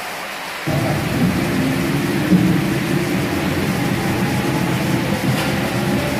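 Centrifugal dehydrator (hydro extractor) starting up about a second in, then spinning its stainless steel basket with a loud steady rumble and a faint whine that slowly rises in pitch as it spins water out of the wet load.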